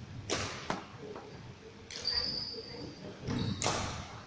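Badminton rackets striking a shuttlecock back and forth in a reverberant sports hall: sharp hits about a third of a second in, again just after, and a loud one near the end, with a brief high squeak around the middle.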